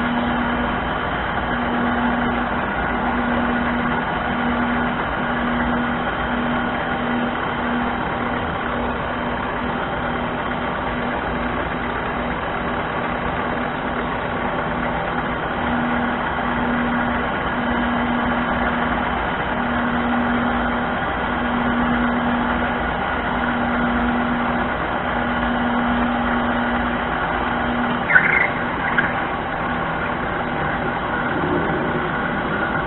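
Harbor Freight mini lathe running at about 500 RPM while a drill bit in the tailstock chuck bores into the aluminium work: a steady motor and drive hum, with a low tone that comes and goes about once a second. A short higher squeak sounds near the end.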